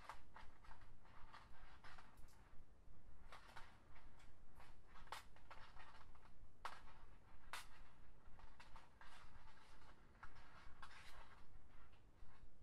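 Flat plastic lanyard (scoubidou) strands being woven by hand into a stitch: a quiet, irregular run of short scrapes and clicks as the stiff plastic strands are bent, slid past each other and tucked through loops.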